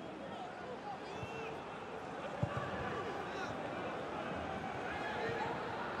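Pitch-side ambience of a professional football match in an empty stadium: steady background noise with faint, distant voices from the pitch. There is a single knock about two and a half seconds in.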